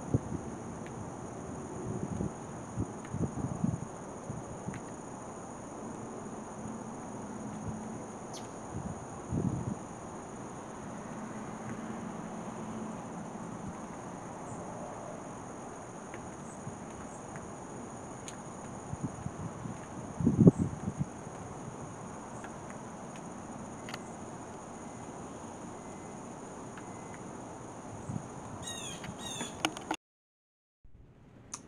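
Outdoor ambience of insects holding a steady high drone, with a few low bumps and a short run of quick high chirps near the end.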